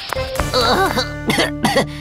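A cartoon character coughing and spluttering from a faceful of flour dust: a short voiced splutter, then a quick run of coughs in the second half, over light background music.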